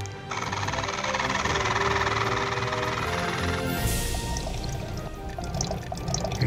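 Background music over a steady rush of water being poured from a plastic bottle for about three seconds, then a brighter hiss that fades.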